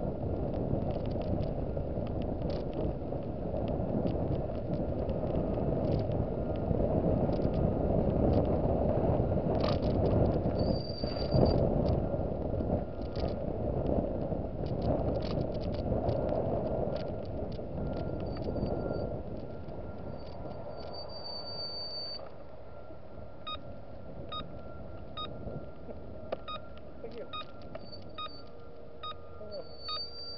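A car driving slowly, heard from inside the cabin: a steady low road and engine rumble with a few clicks and knocks, which drops off about two-thirds of the way through as the car slows to a stop. Near the end a regular tick about twice a second, like a turn signal, repeats over the quieter idle.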